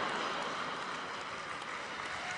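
Live audience applauding and laughing in response to a punchline: a steady wash of claps that eases off slightly toward the end.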